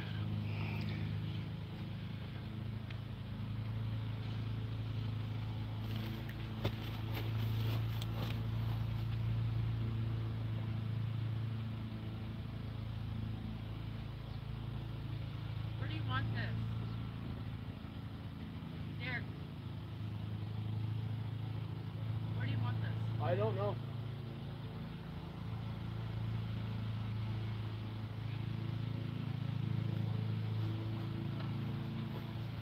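An idling engine gives a low, even hum that holds steady throughout. A few faint short calls rise above it around the middle.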